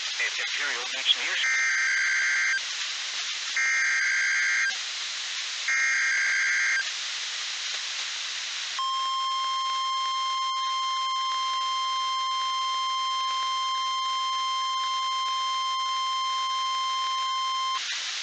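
Emergency Alert System test received off NOAA Weather Radio: three screeching SAME digital header bursts of about a second each, then the steady 1050 Hz weather-radio alert tone held for about nine seconds, all over radio static hiss.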